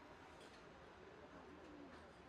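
Near silence: faint indoor room tone, with a faint wavering tone in the middle.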